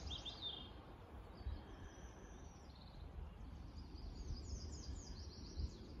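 Small birds singing: high, thin notes, with a long even whistle near the middle and a run of quick repeated notes in the second half, over a faint low rumble.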